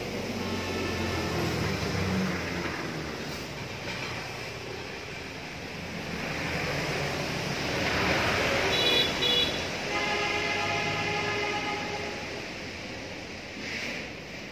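A passing vehicle, loudest about eight seconds in, with steady horn blasts near the start and again about ten seconds in.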